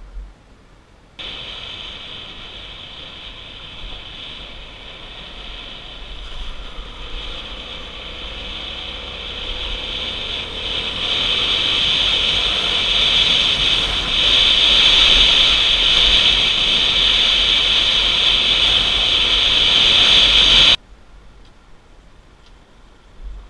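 Motorcycle riding heard from an onboard camera: engine and wind noise with a strong high hiss, growing louder as the ride goes on. It cuts in about a second in and stops abruptly near the end.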